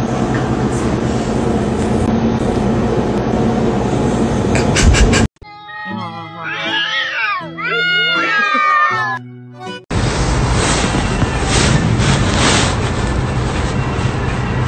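Two domestic cats caterwauling at each other, a few drawn-out rising and falling yowls for about three seconds near the middle. Before and after, a steady mix of music and noise, each part cut off suddenly.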